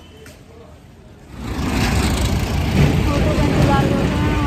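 Loud rumbling noise that starts abruptly about a second and a half in: wind buffeting the phone's microphone, mixed with road traffic.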